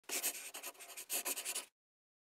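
Quick, dry scratching strokes in two runs, like a pen on paper, cutting off suddenly after about a second and a half: the sound of the bookshop's opening logo sting.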